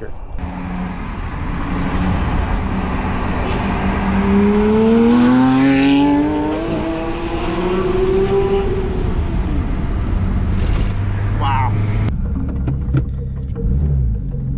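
Porsche 997.2 GT3's 3.8-litre Metzger flat-six, breathing through a SharkWerks center-section exhaust, accelerating: the engine note climbs steadily for several seconds, then eases off, and a lower steady engine hum follows near the end.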